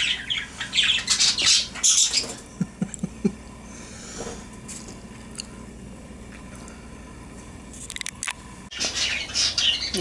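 A flock of pet budgerigars chattering and squawking: loud for the first two seconds or so, only scattered faint calls for several seconds, then loud chattering again near the end.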